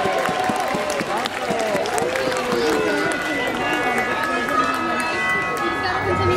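Spectators talking and calling out close by over parade music from loudspeakers. From about halfway, the music's held brass notes come forward.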